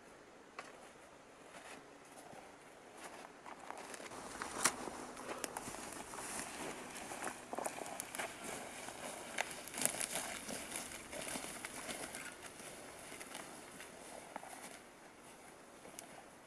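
Footsteps crunching through snow and dry grass, with crackling and rustling. It builds up a few seconds in and fades away near the end.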